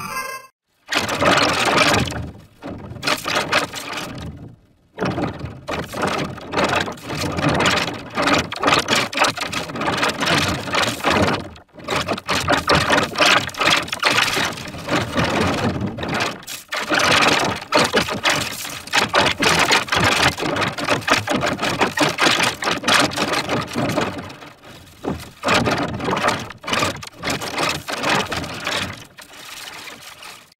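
Heavily distorted, effects-processed commercial soundtrack: a dense, rapidly stuttering buzz in which no words can be made out, broken by short dropouts just after the start, at about five seconds and at about twelve seconds.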